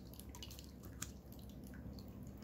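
Small tabletop rock-cascade fountain trickling faintly, with a few soft drips.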